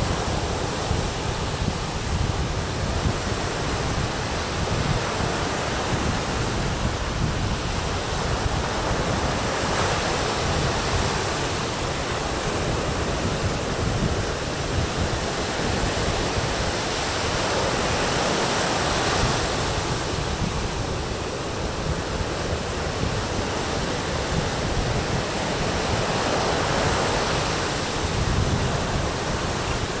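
Ocean surf breaking and washing up a sandy beach: a steady rushing noise that swells louder every eight or nine seconds as a wave breaks.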